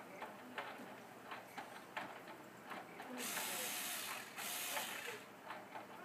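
A child's toy power tool clicking and ratcheting against the plastic housing of a baby swing, with two loud bursts of hissing noise about three and four and a half seconds in.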